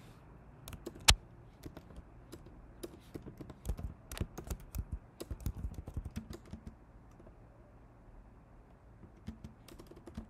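Typing on a computer keyboard: irregular key clicks, with one much louder click about a second in, a dense run of keystrokes through the middle and a thinner spell near the end.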